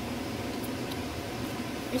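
Steady low hum and hiss of room noise, with a couple of faint ticks.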